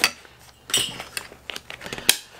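A fabric haversack being handled and folded on a wooden table. There is a sharp click at the start, a short fabric rustle about three-quarters of a second in, then a scatter of small clicks and knocks from its buckle and hardware.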